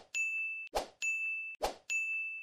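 Animation sound effects for a subscribe-button end screen: short sharp clicks, each followed by a bright single-pitched electronic notification ding that holds about half a second. There are three dings, a little under a second apart.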